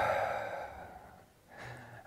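A man breathing out slowly through his mouth in a long, sighing exhale that fades away after about a second: the out-breath of a diaphragmatic belly breath, the tummy squeezed in.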